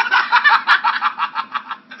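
A man and a woman laughing loudly together, a fast run of ha-ha pulses that starts suddenly and tapers off near the end.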